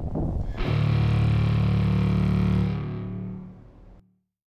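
Music: a loud distorted electric guitar chord struck about half a second in, held, then fading away over the last second.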